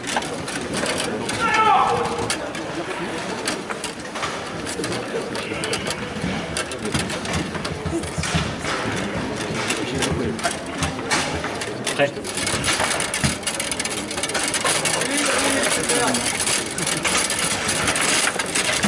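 Foosball being played: the ball and the rods' men knocking and clattering in quick irregular clicks, with sharper shots and rod bumpers striking the table, one especially loud knock about twelve seconds in. Voices are heard in the room, with a brief call near the start.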